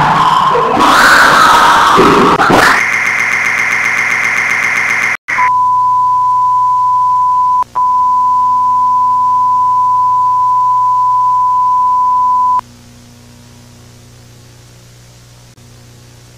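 Loud distorted glitch noise and a harsh electronic buzz that cut off abruptly, then a steady broadcast test-tone beep of the kind that goes with TV colour bars, broken once for a moment, which stops about twelve and a half seconds in and leaves a faint hum and hiss.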